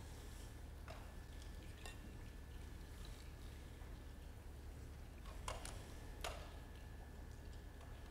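Faint room tone with a steady low hum, broken by a few short, sharp crackles of thin plastic as the film lid is peeled off the bread portion of a prefilled single-serve communion cup.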